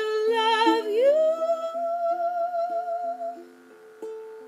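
A woman's voice holds a long wordless note with vibrato over fingerpicked ukulele. The voice glides up about a second in, holds, and fades out after about three seconds, leaving the plucked ukulele notes on their own.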